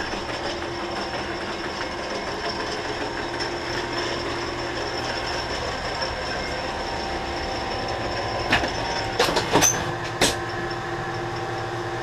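Hardinge DSMA automatic turret lathe running, a steady mechanical hum with several fixed tones. Several sharp clacks come in quick succession about three-quarters of the way through.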